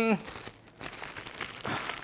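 Clear plastic packaging bag crinkling and rustling as an accessory wrapped in it is handled, louder near the end.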